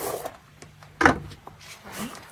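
A few short scrapes and rubs of hand tools on stone and gravel, with a brief louder sound about a second in.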